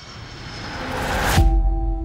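Movie-trailer sound design: a rushing riser swells for about a second and a half and ends in a deep boom, leaving a steady low note sounding.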